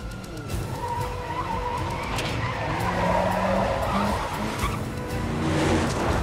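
A hearse's engine running hard as its tyres skid on a dirt road, with a tyre squeal through the middle, under a film music score.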